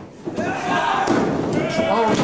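A wrestler is kicked and falls flat onto the ring mat, a slam and thud on the canvas, with men's voices shouting over it.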